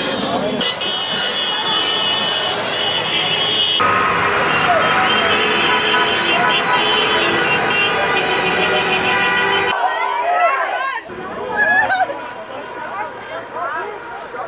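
Car horns sounding in long steady blasts, several at once, over crowd voices; a little before ten seconds in the horns stop and shouting voices of a crowd take over.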